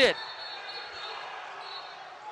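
Players shouting and celebrating on a basketball court after a buzzer-beater, heard faintly as an even noise of voices with no words picked out, in a nearly empty gym.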